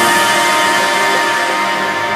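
Background electronic music with no beat: sustained synth chords that slowly get quieter.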